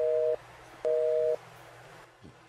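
Telephone busy signal: a two-tone beep, half a second on and half a second off. One beep ends just after the start and a second sounds about a second in, the sign of a busy or cut-off line.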